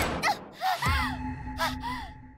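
A loud sharp crack right at the start, then a woman's short frightened cries and gasps, several brief rising-and-falling 'ah' exclamations, over background music.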